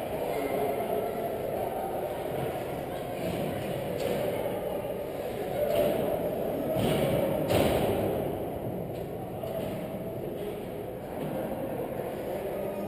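Indistinct distant voices and general hockey-rink noise echoing in a large ice arena, with a few louder knocks about six to eight seconds in.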